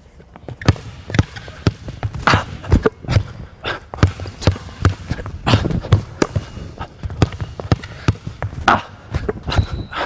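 Basketball dribbled hard on a hardwood gym floor, irregular bounces about two a second mixed with quick sneaker steps on the wood as the player chops his feet and drives. A brief high squeak near the end.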